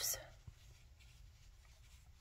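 Faint rustling of a metal crochet hook and blanket yarn as single crochet stitches are worked, with a small click about half a second in.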